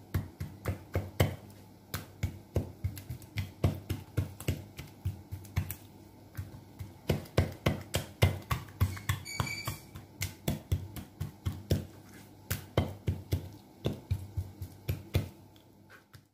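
Metal fork tines pricking raw chicken skin and striking the cutting board beneath, a string of sharp taps a few times a second in uneven bursts with short pauses.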